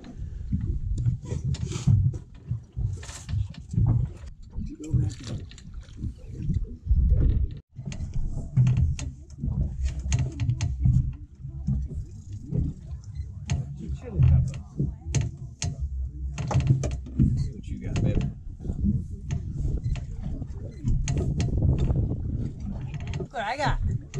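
Indistinct voices over an uneven low rumble, with scattered short clicks.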